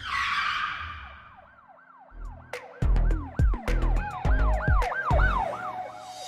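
Produced logo intro sting: a falling whoosh, then a siren sample wailing up and down about three times a second over heavy bass-drum hits that start about two seconds in.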